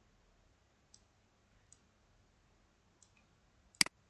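Computer mouse clicking: a few faint clicks, then a loud double click near the end.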